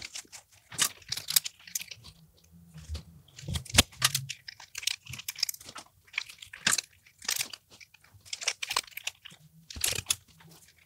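Beard hair rustling and crackling in irregular short bursts, with clicks, as a half-inch curling iron is wound into the beard and worked by hand.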